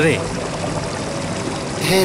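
Waterfall pouring: a steady rush of falling water, with faint music underneath.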